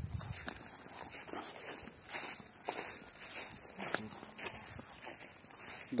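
Footsteps on grass and soil as a person walks, a series of irregular soft steps over a steady, faint, high-pitched hiss.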